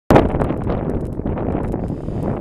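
Wind buffeting the microphone: a loud, steady noise weighted to the low end, with a sharp burst right at the start.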